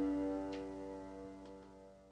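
The last piano chord of the closing music ringing out and fading away, with a few faint clicks, dying out just after the end.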